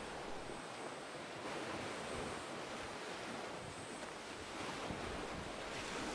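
Gentle surf washing onto a sandy beach: a soft, steady wash of water that swells slightly now and then.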